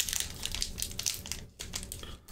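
A foil Pokémon booster pack wrapper crinkling in the hands as it is worked open, a run of quick dry crackles.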